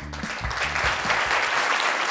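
Studio audience of children and adults applauding, the clapping building up. Background music runs underneath and stops about three-quarters of the way through.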